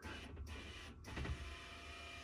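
Electric motor and drive shaft of a power bed lift running steadily with a faint whine as they raise the bed frame.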